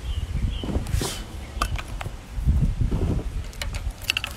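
Handling and movement noise as she walks with the phone: rustling and a few sharp clicks over an uneven low outdoor rumble.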